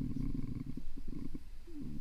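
A man's low, creaky hesitation sound: a drawn-out vocal-fry filler in mid-sentence while he searches for a word, made of irregular low rattling pulses, with a brief voiced bit near the end.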